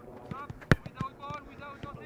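A soccer ball kicked once with a sharp smack about two-thirds of a second in, among a few fainter ball touches, with faint distant players' voices.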